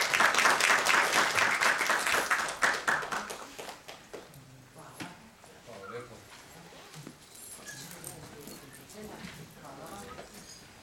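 Audience applauding, loudest at the start and dying away about four seconds in.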